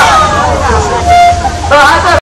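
Protest crowd's voices calling out, with a steady horn-like tone lasting about half a second, a little after one second in.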